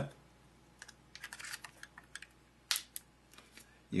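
Light plastic clicks and taps of fingers handling the side of a netbook's casing at its spring-loaded SD card slot, a scattered run of small clicks with one sharper click about three-quarters of the way through.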